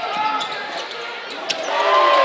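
Live basketball game sound in a gym: sneakers squeaking on the hardwood court amid crowd voices, a sharp knock about one and a half seconds in, and the crowd growing louder near the end as a shot goes up.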